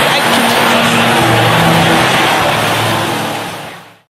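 A congregation praying aloud all together, a loud dense roar of many voices, over sustained low musical notes; it fades out near the end.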